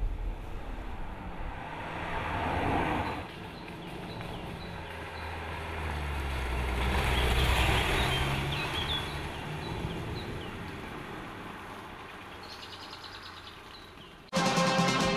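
Škoda Superb driving past: engine and tyre noise grow as it approaches, are loudest about seven to eight seconds in, then fade as it drives away. Birds chirp faintly in the background.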